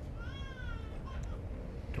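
A short, high-pitched mewing call that rises and then falls, lasting under a second, over a low background rumble.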